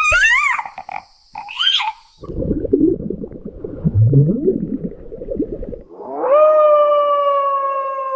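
AI-generated sound for three short clips in turn. First come high, squeaky calls of a cartoon baby dinosaur hatching from its egg, then about three and a half seconds of low, muffled underwater rumbling. Last comes one long howl that rises and then slowly falls.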